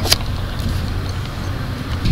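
Steady low rumble of background noise, with a short sharp click just after the start.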